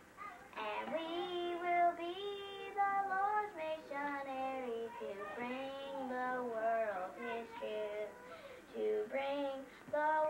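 A young girl singing a song on her own, holding notes and gliding between them, with a brief break for breath near the end.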